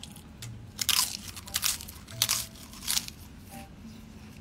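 A person biting and chewing crisp food close to the microphone: four loud crunches, about one every two-thirds of a second.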